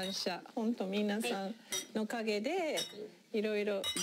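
People speaking, with wine glasses clinking together in a toast.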